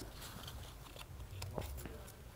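Faint small ticks and rubbing as gloved hands push an oil-coated electrical connector onto a Mercedes M272 ignition coil; the connector's first latch click is deadened by the oil and barely heard.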